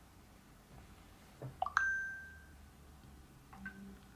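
Two short WhatsApp message sounds from an Android phone. About a second and a half in comes a quick rising pop with a brief ringing ding as the typed message is sent. Near the end a fainter blip sounds as the reply comes in.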